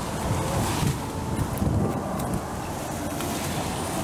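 Wind buffeting the microphone in gusts, with leaves and branches rustling and snapping in short bursts as someone pushes through a dense bush.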